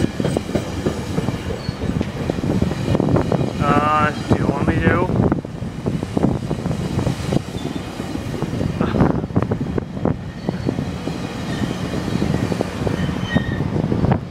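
GO Transit bilevel passenger coaches rolling past close by, a steady rumble with the wheels clattering over the rails throughout.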